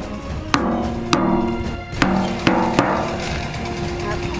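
Background music with held notes, cut by five sharp knocks in the first three seconds.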